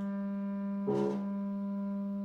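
Small chamber ensemble playing a silent-film score: a long held low woodwind note, with a short bright accent about a second in.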